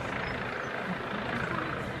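Steady low rumble of distant engine noise in the outdoor background.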